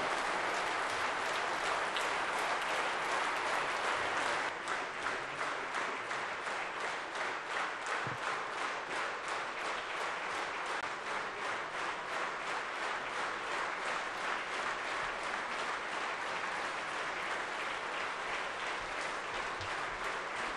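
A large chamber audience giving a standing ovation: dense applause that, a few seconds in, settles into rhythmic clapping in unison.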